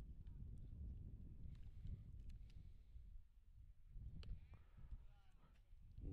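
Near-silent outdoor ambience at a ballfield: a steady low rumble with a few faint clicks, and a faint, distant, drawn-out voice calling out about four and a half seconds in.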